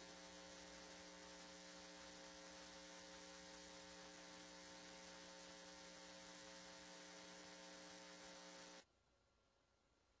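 Near silence: a faint, steady electrical hum in the audio feed, which cuts off to dead silence near the end.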